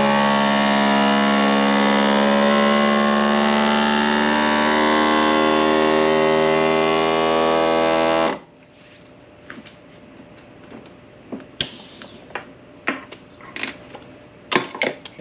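FoodSaver vacuum sealer's pump running steadily, drawing the air out of a mason jar through a hose and jar-sealer attachment to vacuum seal the lid. It stops abruptly about eight seconds in, once the jar is sealed. Light clicks and knocks follow as the attachment is handled.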